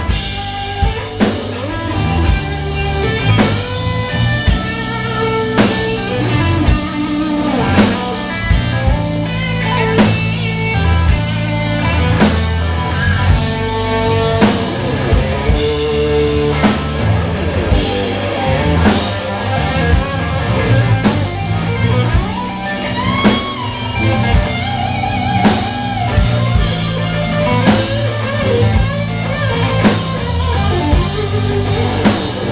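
Live blues band playing: electric bass guitar, acoustic-electric guitar, drum kit and keyboard, with a steady beat and a walking bass line. In the second half a lead line bends its notes up and down.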